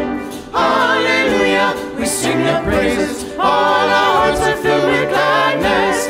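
Choir singing sacred music, in several phrases with short breaks between them.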